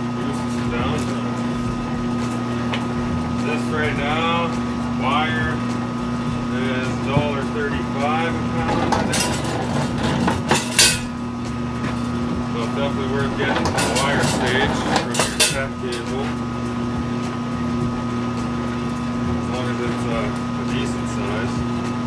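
Steady electric motor hum from a copper cable stripping machine, with metallic clinks and clatters about nine to eleven seconds in and again around fourteen to fifteen seconds.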